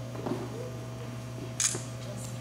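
Steady low hum and room tone with a faint murmur early on, and one short sharp click about one and a half seconds in, typical of handling noise from the camcorder recording.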